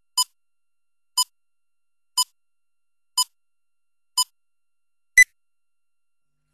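Countdown leader beeps: a short, identical electronic beep once a second, five times, then a final louder, higher-pitched beep about five seconds in, marking the last count before picture.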